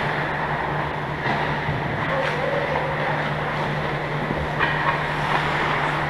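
Indoor ice rink ambience during a hockey game: a steady hiss and low hum of the arena, with a few faint sharp clacks from play on the ice about one, two and four and a half seconds in.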